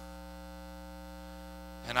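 Steady electrical mains hum in the sound system, a low buzz made of several steady tones. A man's voice begins just before the end.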